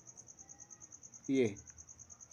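Faint, steady high-pitched insect trill, an even pulsing of about a dozen beats a second.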